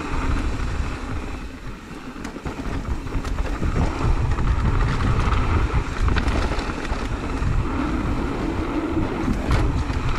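Mountain bike rolling fast down a dirt trail, heard as loud wind buffeting on the camera microphone over tyre noise, with scattered clicks and rattles from the bike over the ground. It eases a little for a moment early on, then picks up again.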